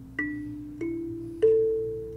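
Kalimba (thumb piano) plucked one note at a time, three notes stepping up a scale about every half second or so, each left ringing; the last and highest note is the loudest.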